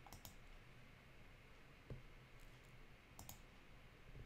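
Near silence with faint computer mouse clicks, once near the start and again about three seconds in.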